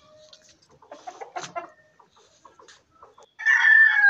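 Rooster crowing: a loud call that begins about three and a half seconds in and falls in pitch. Soft clucks and scratching come earlier.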